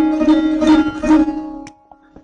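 Sarod playing a short krintan phrase: about four plucked notes stepping down from a higher note to a lower one, ringing over one sustained note, then fading and stopping with a short click near the end.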